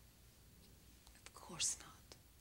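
Quiet room tone with a short whispered utterance about one and a half seconds in: a brief falling voiced sound ending in a sharp hiss.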